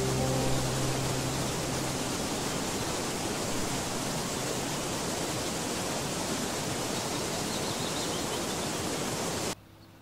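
Waterfall: a steady rush of falling water. It cuts off suddenly about half a second before the end.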